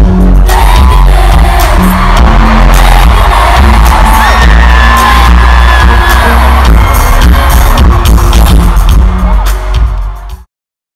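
Live pop music played very loud through arena speakers, heavy in the bass, with a singer's voice over it and the crowd joining in, recorded on a phone. The sound fades out near the end.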